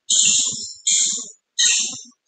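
Choppy, garbled audio coming through a video call: three hissy bursts of about half a second each, cut off abruptly by dead silence between them.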